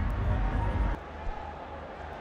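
Cricket-ground ambience from the broadcast's field microphones: a low rumble with hiss above it that drops sharply about a second in to a quieter, steady background hum.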